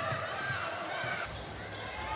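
Indoor basketball arena game sound: a basketball bouncing on the hardwood court over a steady crowd background, with the background changing abruptly a little past halfway.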